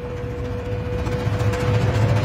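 Cinematic logo-reveal sound effect: a single held tone over a low rumble that grows louder, the tone ending near the end.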